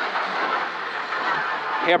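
Ford Escort Mk2 rally car's engine running hard at stage speed, heard from inside the cabin with road and tyre noise, steady throughout. The co-driver's voice cuts in at the very end.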